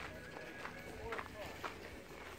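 Footsteps crunching on gravel, about two steps a second, with faint voices in the background.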